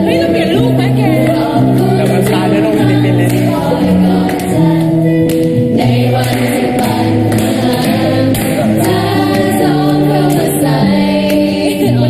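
A group of young voices singing a slow, sentimental song together, with long held notes, accompanied by electric guitar.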